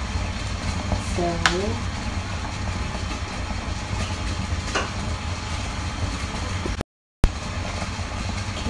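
Stainless steel double-boiler pot heating on the cooker as the wax comes up toward 180 degrees: a steady low rumble, with two light clicks and a brief cut to silence near the end.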